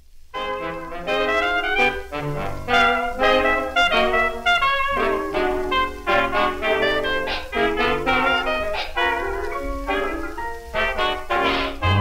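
Instrumental introduction of an original 1929 popular-song recording: band music with a quick run of pitched notes and no voice.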